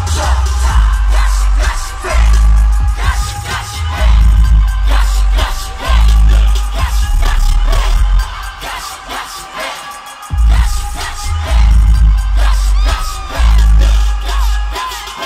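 Live pop song played loud through an arena PA, with heavy bass pulses and singing, and a crowd screaming over it. The bass drops out for a couple of seconds just past the middle, then comes back.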